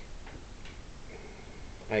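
Quiet classroom room tone during a pause in talk, with a few faint ticks.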